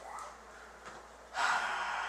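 A man's breathy laugh, starting suddenly about one and a half seconds in.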